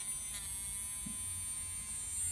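Worn original small can motor with brass flywheel, from an Atlas Dash 8-40CW model locomotive, running free on the bench: a steady buzzing whine. The motor is worn out ('she's knackered'), though its current draw has just dropped and it is running smoothly for the moment.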